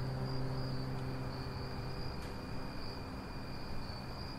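The last low held note of bowed-string music fades out over the first two seconds. Under it runs a faint, steady, high-pitched trill that pulses slightly, like a cricket's chirring.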